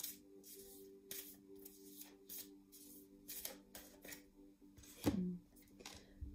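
Oracle cards being shuffled and handled: soft, irregular flicks and snaps of card stock, with a louder one about five seconds in. Quiet background music of steady held notes runs underneath.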